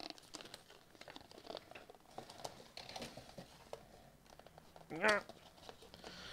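Cardboard and plastic packaging being handled and pulled apart by hand: faint scattered rustling and small clicks. A brief voice sound, the loudest event, comes about five seconds in.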